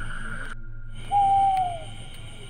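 A single owl hoot: one long, clear call that glides slightly down in pitch and starts about a second in, after a brief break in the sound. Before the break, a steady high-pitched drone.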